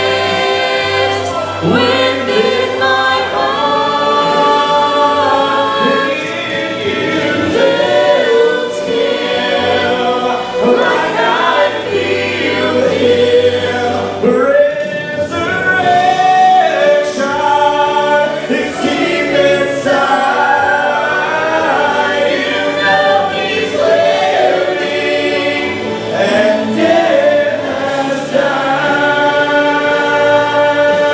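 Gospel vocal group of five mixed voices, men and women, singing a gospel song together in harmony into microphones.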